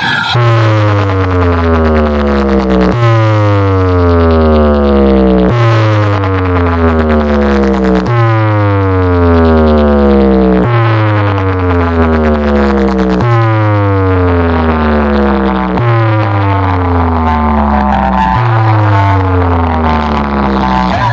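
DJ box speaker stack playing a loud electronic test sound: a tone that sweeps down in pitch into deep bass, restarting about every two and a half seconds, eight times over.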